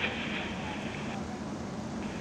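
Steady low rumble of a parked fire engine running at a fire scene. A radio's hiss cuts off suddenly about a second in.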